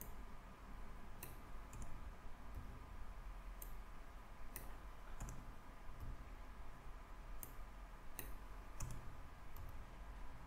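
Faint, scattered clicks of a computer mouse and keyboard during code editing, about a dozen single clicks at uneven intervals over a low room hum.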